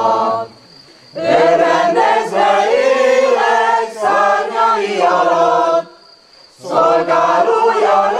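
Mixed choir singing in long sustained phrases, breaking off for two short breaths: one about half a second in and one about six seconds in.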